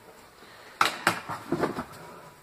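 Hands rummaging among objects in a cardboard box. About a second in there is a sharp knock, then a run of smaller knocks and rustles as items are shifted and an alarm clock is lifted out.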